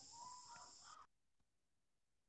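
Near silence, with a faint hiss and a thin wavering tone during the first second that then die away.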